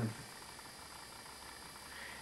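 Low, steady room tone: a faint even hiss with a thin hum, heard once a man's drawn-out "um" trails off in the first fraction of a second.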